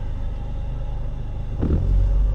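Low, steady rumble of a car's engine and tyres heard from inside the cabin, swelling briefly near the end.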